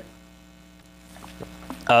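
Steady electrical mains hum, a low constant drone with a few fixed tones, heard through a pause in speech; a man says "uh" at the very end.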